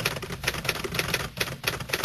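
Typewriter sound effect: a rapid, uneven run of key clicks as title text is typed out letter by letter.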